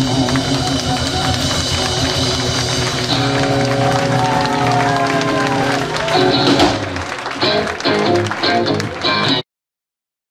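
Live blues trio of electric guitar, bass and drums playing a sustained ending with bending guitar notes, followed by crowd shouting and cheering; the sound cuts off suddenly near the end.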